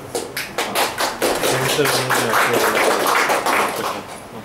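Audience applauding. A few separate claps at first fill in within half a second, with voices underneath, and the applause stops near the end.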